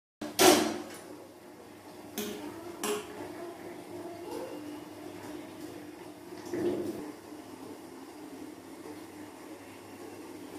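Metal kitchenware clattering: a loud clatter about half a second in, two lighter knocks around two and three seconds, and a softer bump near seven seconds, over a faint steady hum.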